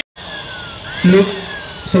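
A motor vehicle engine running, with a short loud burst about a second in.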